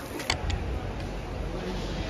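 Low, steady rumble of outdoor city background noise, with two short clicks about a third and half a second in.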